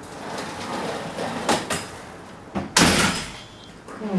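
An apartment front door shutting with a loud thud about three-quarters of the way in, after a few light knocks.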